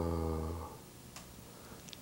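A man's drawn-out, level-pitched "uhh" hesitation, held for under a second, then quiet room tone with a faint click about a second in.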